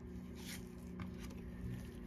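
Trading cards handled with nitrile-gloved hands: a few soft swishes of card stock as a card is slid off the front of a stack and tucked behind it. A faint steady low hum runs underneath.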